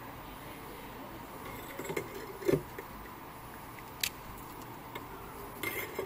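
Small handling sounds at a soldering bench: a few light clinks and rustles as wires and a solder spool are handled, with one sharp click about two-thirds of the way through, over a faint steady hum.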